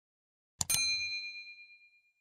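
A quick click followed by a bright bell-like ding that rings on a few high tones and fades away over about a second: the notification-bell sound effect of an animated subscribe button.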